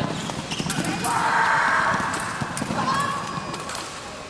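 Sabre fencing exchange: blades clicking and clashing and feet stamping on the piste in quick sharp knocks, with a loud cry from a fencer about a second in.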